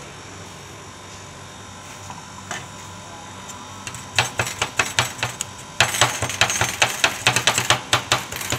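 Two metal scrapers chopping and scraping the ice cream base and fruit on the steel cold plate of a rolled (stir-fried) ice cream maker. The sharp metal-on-metal clicks start about four seconds in and become a fast, loud clatter near the end.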